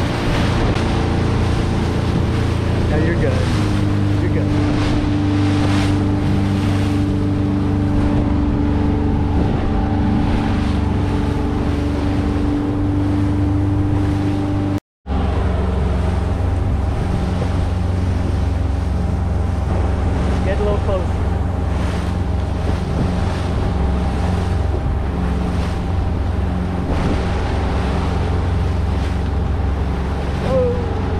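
Motorboat engine running steadily at speed, with water rushing and splashing along the hull. The engine note shifts a few seconds in, and all sound cuts out for a moment about halfway through.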